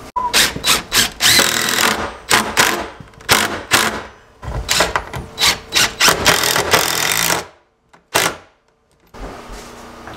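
Cordless drill driving screws into barnwood shelf brackets in a run of short trigger bursts, some brief and some a second or two long. Near the end it stops, with one last short burst.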